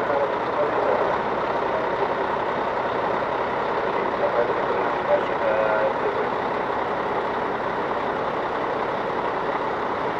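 Steady running noise of a fire engine parked close by, with faint voices now and then around the middle.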